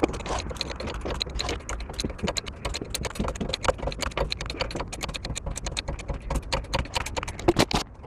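Hydraulic bottle jack being pumped by its lever handle to raise a car, making rapid, irregular clicks and rattles.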